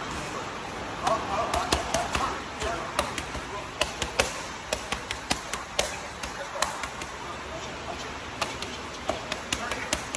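Boxing gloves striking padded focus mitts: sharp slaps coming in quick, irregular flurries of punches.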